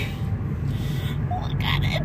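Steady low road and engine rumble heard inside a moving car's cabin, with a brief bit of voice about a second and a half in.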